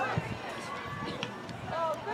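Voices calling and talking across an outdoor soccer field, quieter in the middle and rising again near the end.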